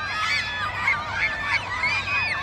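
Many young girls shouting and squealing at once, high-pitched overlapping voices with no single clear call.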